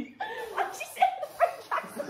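High-pitched laughter from a group of friends: a run of about five short, rising squeals a few tenths of a second apart.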